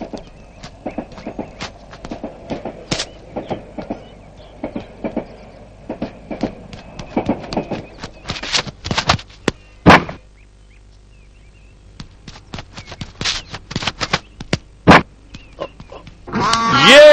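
Irregular knocks and thuds of footfalls as a cricket bowler runs in, with one sharp knock about ten seconds in, a leather ball striking the bat, and another near the end.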